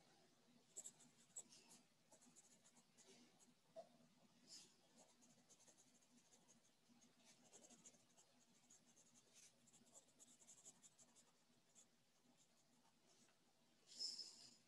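Faint scratching of handwriting on paper, in many short, irregular strokes.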